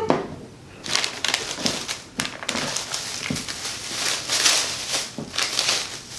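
Packaging crinkling and rustling as an item is unwrapped and handled by hand, a continuous busy crackle that swells and fades.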